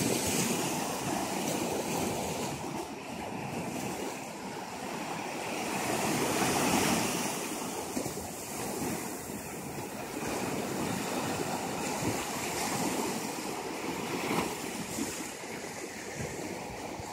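Small ocean waves breaking and washing up on a sandy beach, a steady rushing surf that swells louder near the start and again about six to seven seconds in.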